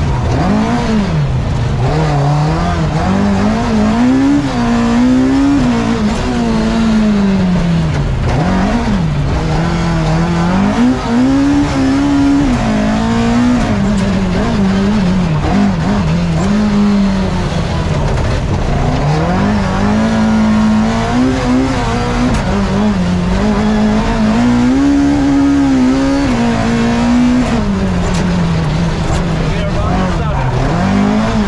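Mark II Ford Escort rally car's 2.5-litre Cosworth YB four-cylinder engine, heard from inside the cabin, driven hard on track. Its pitch climbs and drops back every few seconds through gear changes and corners.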